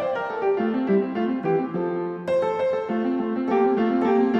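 Background piano music: a gentle melody of single notes moving step by step over lower notes, with a new phrase struck about two seconds in.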